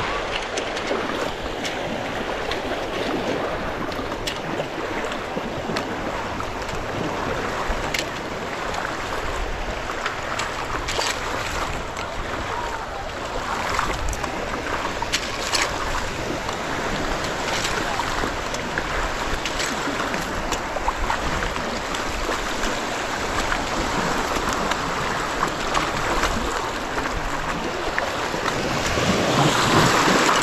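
Shallow surf lapping and sloshing around someone wading through ankle-deep Gulf water, with scattered small splashes. The wash swells near the end as a small wave breaks at the water's edge.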